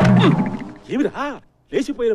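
A loud, gruff roar bursts out right at the start and dies away within about half a second. A voice follows in short rising-and-falling sounds.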